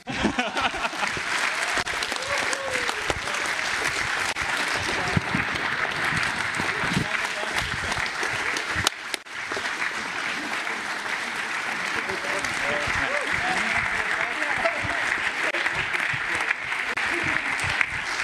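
Large audience applauding, steady and sustained, with a brief dip about halfway through.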